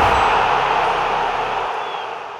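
A rushing wash of noise from a logo-intro sound effect, loud at first and slowly fading away.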